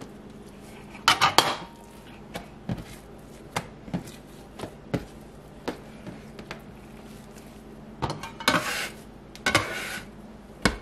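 Bench scraper scraping and knocking on a countertop as wet dough balls are pushed and shaped: a quick run of scrapes about a second in, scattered light taps through the middle, and longer, louder scrapes near the end. A faint steady hum runs underneath.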